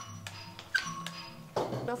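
Electronic doorbell chime sounding after the button is pressed: a short run of thin electronic tones lasting about a second and a half.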